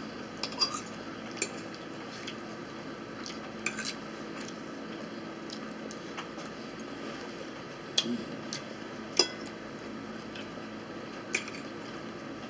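A fork clicking and scraping against a plate as salad is eaten, in scattered irregular taps, the sharpest a little past the middle, over a steady faint room hiss.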